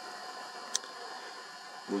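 Steady faint background hiss with faint high steady tones, broken by a single sharp click about three-quarters of a second in.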